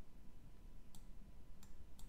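Sharp, isolated clicks of a stylus tapping on a pen tablet while a structure is hand-drawn, two of them about a second and a second and a half in, over a low steady hum.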